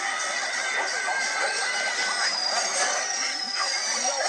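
Several video soundtracks playing over one another from a computer: music and other sounds piled into a dense, steady jumble.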